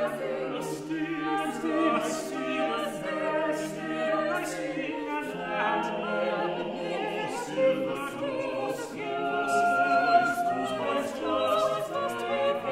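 An English Renaissance madrigal sung a cappella by a small vocal ensemble, several voice parts weaving together, with the singers' crisp consonants cutting through.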